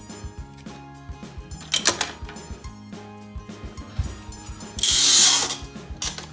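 Plastic LEGO parts clicking and rattling as a lever on the model is pulled and the model is handled, over background music. About five seconds in comes a loud, brief burst of rustling noise.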